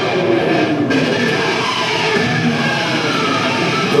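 Nu-metal band playing live at full volume: distorted electric guitars over drums, leading into the first sung line.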